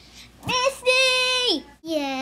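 A young child's high voice calling out in drawn-out, sing-song notes with no clear words. A short rising call comes first, then a long held note that drops away at its end, then another call begins near the end.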